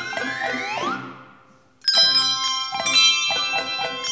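Handbell choir ringing: a sustained chord with a sweep rising in pitch dies away to a near-silent pause of under a second, then a loud new chord enters about two seconds in, followed by a quick run of ringing bell notes.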